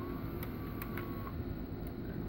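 Opened VCR's tape transport running a VHS tape on exposed reels: a steady low mechanical hum with a faint high whine that stops a little past halfway, and a few light clicks.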